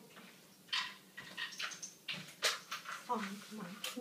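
Kitchen utensils being handled and clinking in a series of short rustles and knocks, then a woman's voice starts near the end.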